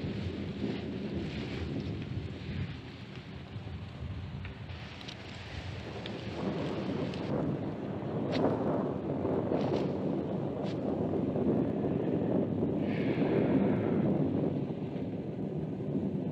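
Low rolling rumble of distant thunder with wind on an old film soundtrack. It swells about six seconds in, holds for several seconds and eases off near the end.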